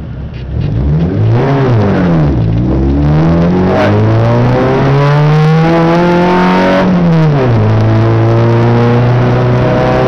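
VW Jetta Mk2 race car's engine, heard from inside the cabin, accelerating hard off the start line: the revs climb, fall sharply about two seconds in at a gear change, climb again for several seconds, and fall once more at another upshift about seven seconds in.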